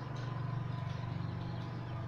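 A steady low hum with faint background noise, even and unchanging.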